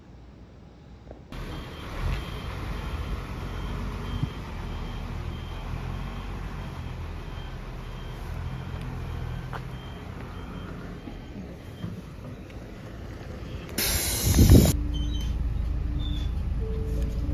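A Japanese route bus idling at a stop with a steady low engine rumble, while a faint electronic beep repeats about twice a second. Near the end there is a short loud burst of hiss.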